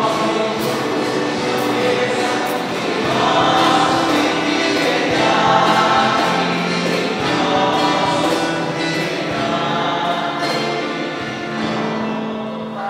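A choir singing a church hymn without a break.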